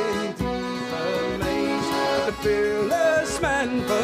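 Irish folk trio playing a slow ballad: piano accordion carrying the melody over acoustic guitar and bodhrán.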